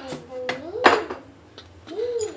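Kitchenware clinking on a glass cooktop counter: two sharp knocks of utensils set down about a third of a second apart, the second louder.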